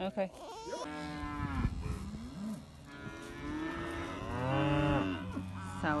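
Beef cows mooing: long, drawn-out calls from several cows in the herd, one after another and partly overlapping, with a new call starting near the end.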